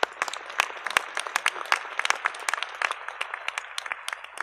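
Audience applause: many hands clapping at once, steady throughout.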